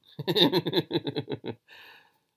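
A person laughing: a quick run of short pulses, about eight a second, fading away, then a breathy exhale near the end.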